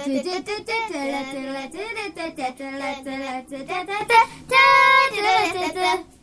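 A child's voice singing a wordless tune, with held notes and a longer, louder high note near the end.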